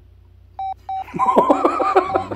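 Two short electronic beeps about half a second in, then snickering laughter from about a second in, with more short beeps on the same note mixed in.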